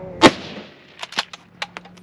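A single loud rifle shot a quarter second in, sharp with a brief echo, followed by a few small, sharp clicks.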